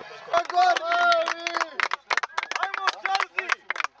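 People's voices talking near the microphone, mixed with many irregular sharp clicks or knocks.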